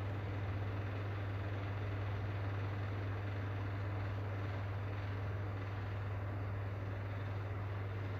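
An electric fan unit running steadily: an even whirring with a strong low hum.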